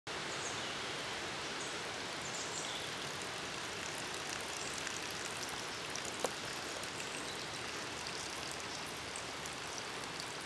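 Steady outdoor forest ambience: an even, rushing hiss like running water or leaves in the wind. A few faint high chirps come in the first few seconds, and a single short tick about six seconds in.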